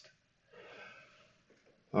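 A man's soft breath, drawn in between sentences, lasting about half a second, with the end of one spoken word at the start and the next word beginning at the end.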